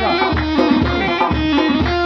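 Kurdish folk music on naye and tepl: a reedy wind pipe holds and moves between sustained high notes while a deep drum beats about twice a second.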